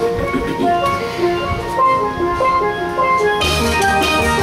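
Steel band playing a melody in short, ringing steel pan notes. About three and a half seconds in, deep bass notes and drums come in and the sound grows fuller.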